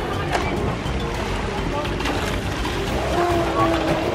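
Water splashing from a person swimming in a pool, under background music and indistinct voices.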